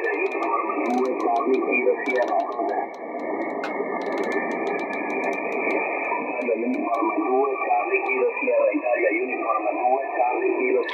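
Yaesu FTdx-10 transceiver receiving a single-sideband voice station on the 40 m band through its speaker: thin, muffled, band-limited speech over background noise. The tone shifts as the IF shift control is turned, the low end of the audio dropping and then rising again.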